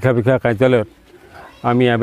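Speech only: a man talking close to the microphone in a low voice, one phrase at the start and another starting near the end, with a pause of under a second between them.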